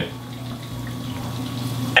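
Fish frying in oil in a skillet, a steady sizzle with a low steady hum underneath.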